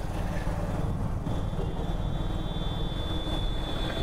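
A vehicle engine running steadily with road noise while on the move. A faint, thin, high steady tone joins about a second in.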